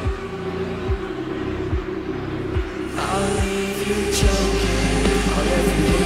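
Live heavy band music in a quiet, low breakdown: a held synth tone with deep booming bass hits about once a second. About three seconds in, the full band sound swells in with a rising sweep and grows louder.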